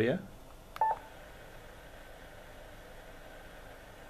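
A single short electronic beep from the Yaesu FT-857D's controls just under a second in, as the radio is switched from the FM broadcast band to the airband. After it comes a faint steady hiss of receiver noise from the radio's speaker.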